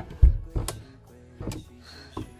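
An RV side window being shut and latched by hand: a low thump a moment in, then two sharp clicks, over soft background music.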